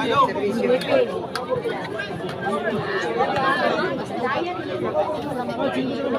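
Large crowd of spectators chattering, many voices overlapping at a steady level.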